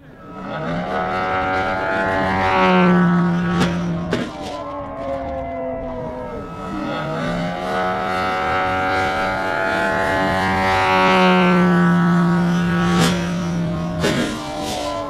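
GP 123 petrol engine of a large Pilot-RC Laser 103 aerobatic model plane, fitted with MTW tuned pipes, running with its pitch climbing, then sharp knocks of the plane hitting the ground. The same climb and impact come twice, a few seconds apart.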